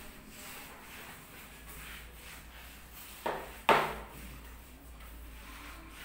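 Grated coconut pulp being rubbed and pushed across a bare concrete floor, a soft, faint scraping, with two short louder knocks a little past halfway, the second the louder.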